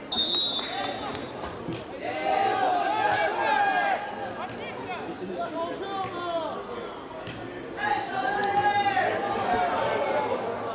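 A short, shrill whistle blast right at the start, typical of a referee's whistle, followed by loud shouting voices, in two stretches, from players and spectators.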